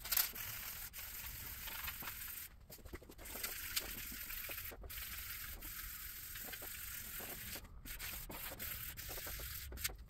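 Felt-tip permanent marker scribbling rapidly back and forth across bare sheet steel, laying a guide coat for body filing: a faint, steady rubbing with a few short pauses.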